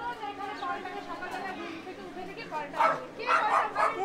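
Several voices talking over one another in a complaining chatter, getting louder about three seconds in.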